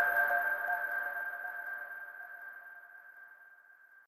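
Closing note of an electronic logo jingle: one sustained high synthesizer tone with fainter lower tones beneath it, fading out steadily over about four seconds.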